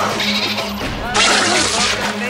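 Cartoon soundtrack of a seagull attacking a woman: squawking cries and shrieks, with a loud, harsh burst about a second in, over a steady low note of the remix music.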